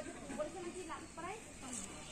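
Faint, indistinct voices of people talking.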